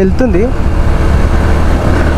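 Bajaj Pulsar NS160's single-cylinder engine running at a steady cruise under heavy wind rush on the microphone. A short voice sound comes just after the start.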